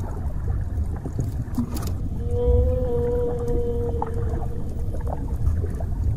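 Dolphin underwater vocalisation: a steady whistle held for about two to three seconds, starting about two seconds in, over a low rumble of moving water, with a few clicks before it.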